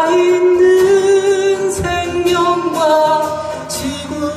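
A man singing a slow folk melody, holding long notes, to steady strumming on an acoustic guitar.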